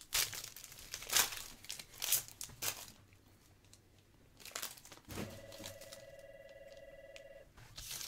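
Foil wrapper of a trading-card pack being torn open and crinkled, in several sharp crackling strokes over the first three seconds. About five seconds in, a steady electronic buzzing tone from a phone lasts about two and a half seconds.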